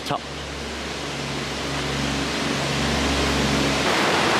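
Rushing meltwater from the glacier river, a steady hiss that grows louder, with the low steady hum of a small passenger cart's engine underneath.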